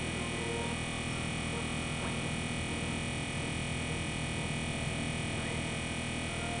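Dense, steady electronic synthesizer drone: many held tones stacked over a noisy, rumbling low end, with a couple of faint brief chirps sliding in pitch.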